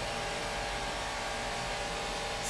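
Steady background noise: an even hiss with a low hum beneath it, no distinct events.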